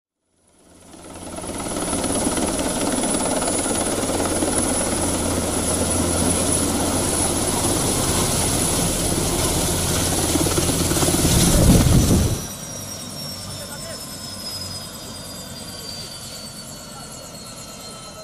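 Helicopter running loud and steady, with a low hum and a high whine. About twelve seconds in it swells, then drops off suddenly, and a quieter whine slides slowly down in pitch.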